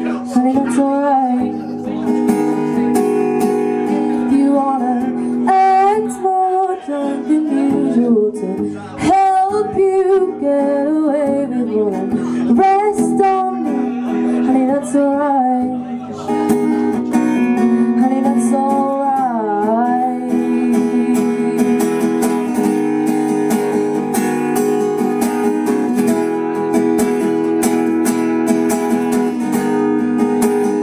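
Live music: a woman singing with vibrato over a strummed acoustic guitar, amplified through a PA. Her voice stops about twenty seconds in and the guitar strumming carries on alone.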